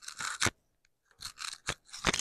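Close handling of a dress strap by hand with a small object: three short rustling scrapes, each ending in a sharp click.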